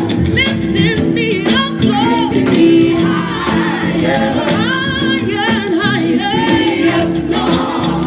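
Three women singing a gospel-style inspirational song in harmony, accompanied by electric guitar, with a tambourine keeping a steady beat.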